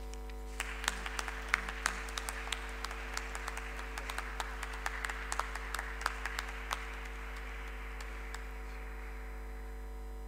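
Audience applause: many hands clapping, starting just under a second in and thinning out over the last few seconds, over a steady low hum.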